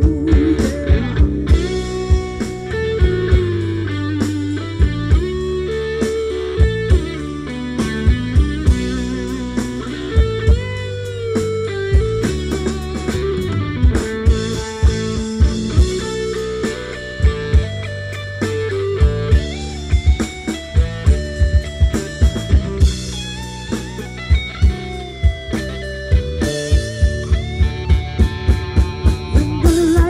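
Live band playing an instrumental passage: electric guitar prominent over bass, keyboard and a steady drum beat.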